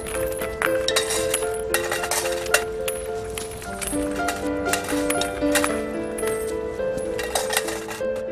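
Slow instrumental music with held notes, over coins clinking several times as they are dropped onto cardboard and into a tin can.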